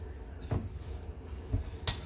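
Three light knocks of a silicone spatula against a metal pot as potato salad is folded, over a low steady hum.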